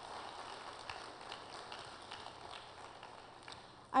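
Audience applauding, a patter of many hand claps that slowly fades away near the end.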